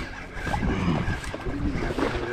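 Open-water ambience on a small fishing boat: a steady wash of wind on the microphone and choppy sea, with faint voices in the background.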